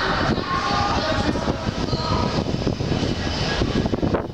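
Railway station ambience heard from a foot-over bridge: a loud, steady roar with indistinct voices mixed in.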